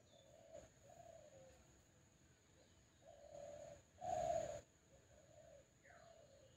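Faint cooing of a dove: a series of short, low hoots, the loudest about four seconds in with a brief rush of noise under it.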